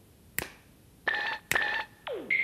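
Finger snaps about once a second, each a single sharp click, with two short electronic beeps in the second half.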